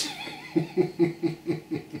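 A man laughing: a run of short, evenly spaced 'ha' pulses, about five a second, starting about half a second in.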